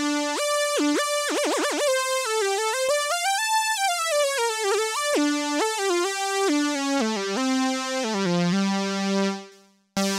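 MRB Tiny Voice synth playing a single-note sawtooth lead melody, the notes sliding into one another with glide. The pitch wavers in quick vibrato about a second in, makes a long slide up and back down in the middle, and the last low note fades out just before the end.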